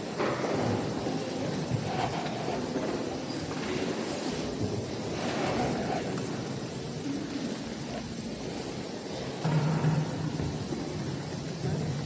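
Indistinct background noise of people moving about in a large church room, with no clear speech or music.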